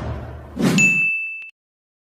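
The tail of an intro jingle fades out, then a single hit rings on as one high, bell-like ding sound effect. The ding is held for about three quarters of a second and cut off abruptly about one and a half seconds in.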